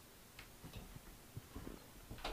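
A Bernese Mountain Dog puppy's claws clicking lightly on a tile floor as it moves about, a few faint, irregular ticks.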